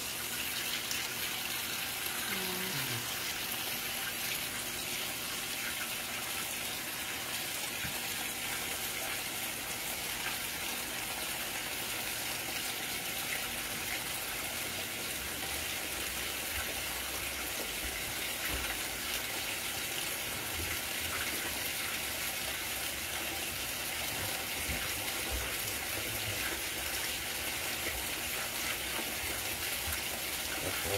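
Whirlpool WTW4816 top-load washer filling its tub at the start of a Super Wash cycle, a steady rush of water pouring from the fill inlet onto the laundry.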